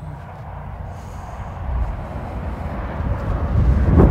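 Wind buffeting an outdoor microphone: an uneven low rumble that swells in gusts and grows louder in the second half.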